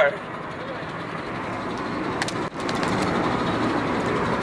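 Steady road and tyre noise inside a moving car. About halfway through, a few sharp metallic clangs join it, from a loose panel under the car rattling against the underbody as it drives.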